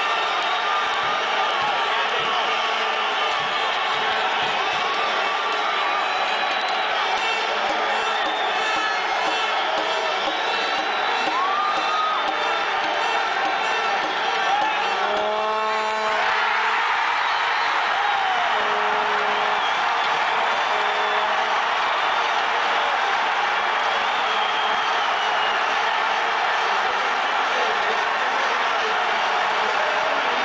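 Stadium crowd of football supporters cheering and shouting, heard from among them in the stands, with a few nearby fans yelling close to the microphone. The crowd noise swells about halfway through and stays up as they cheer a goal.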